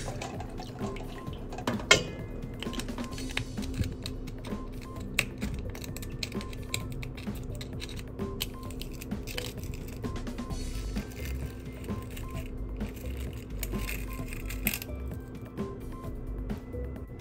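Quiet background music, over small metallic scrapes and clicks of a serrated grapefruit knife working inside an aluminium Nespresso capsule to pry out its plastic liner. The sharpest click comes about two seconds in.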